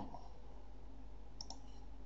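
A single faint computer mouse click about one and a half seconds in, over a low steady hum.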